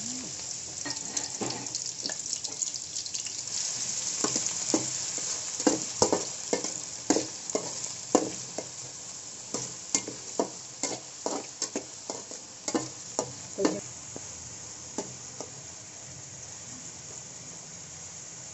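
Chopped onions sizzling in hot oil in an aluminium kadai. Through the middle, a metal spatula scrapes and taps against the pan about once or twice a second as they are stirred. The steady sizzle carries on after the stirring stops.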